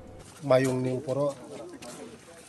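A man's voice holding a drawn-out, level-pitched hesitation sound about half a second in, then a short syllable.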